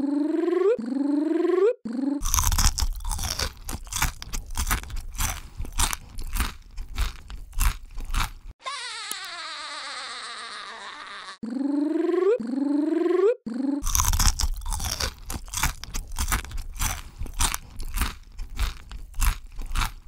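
Crunchy eating ASMR sounds: two long runs of rapid crisp bites and crunching chews. Each run is led in by two short rising tones, and between the runs there is a long falling sweep sound effect.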